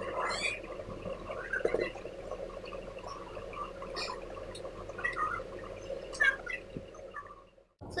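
Soft, scattered taps of a damp makeup sponge being dabbed over the face, over a faint steady hum.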